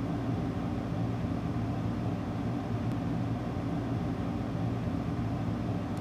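A steady low hum of a small motor running evenly, with no clicks or other events standing out.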